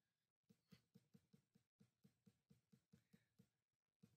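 Near silence, with faint evenly spaced ticks, about four a second, through most of it.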